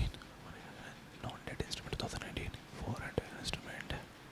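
A man whispering faintly into a handheld microphone, mouthing a list to himself under his breath, with small mouth clicks and a sharp click at the start.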